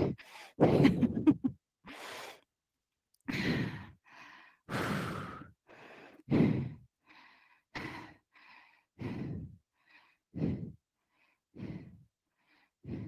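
A woman breathing hard while holding a plank, with a short laugh at the start, then quick, forceful breaths about once a second.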